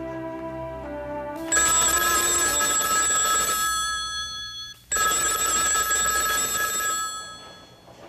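Telephone bell ringing loudly in two long rings. The first starts suddenly about a second and a half in and breaks off briefly just before the middle. The second dies away near the end. Soft music plays before the ringing starts.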